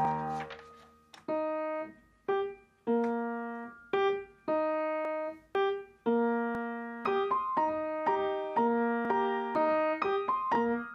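Solo piano music: a held chord dies away, then after a short pause slow chords are struck one after another, the notes coming quicker in the last few seconds.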